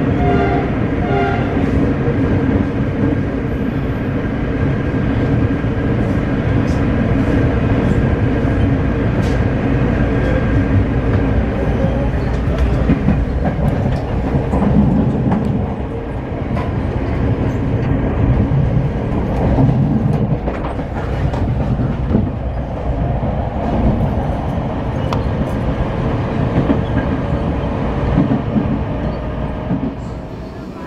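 Ride noise of a moving train heard from inside the carriage: a steady low rumble of wheels on rail, with scattered clicks over the rail joints.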